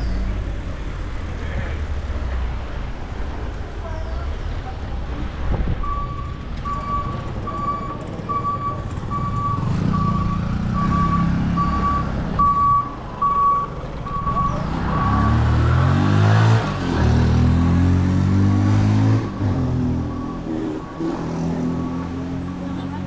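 Street traffic and wind rumble from a moving bicycle. From about six seconds in until near the end, an electronic beeper sounds a steady high beep about one and a half times a second. A motor vehicle passes, loudest about two-thirds of the way through.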